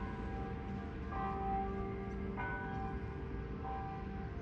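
Bells ringing, with a new stroke a little over every second, each one ringing on and overlapping the last.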